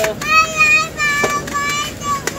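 A toy's electronic tune: a run of short, high, steady notes stepping from pitch to pitch.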